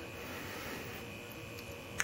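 Quiet, steady background hum and hiss: room tone.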